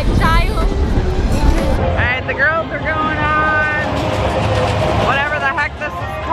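Riders shrieking and whooping on a spinning fairground ride, with wind rumbling on the microphone. About two seconds in the sound changes to music with a held, sung voice.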